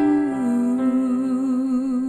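A woman's voice holding a long wordless note with vibrato, stepping down slightly in pitch about a quarter second in, over a sustained piano chord.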